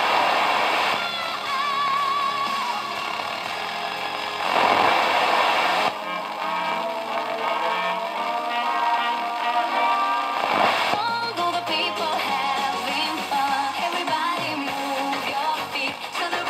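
Homemade FM radio built on a Philips TDA7088T chip, playing through its loudspeaker while it is tuned across the FM band with a varicap dial. Music and singing come from one station after another. About three times, a short burst of hiss sounds as the tuning passes between stations.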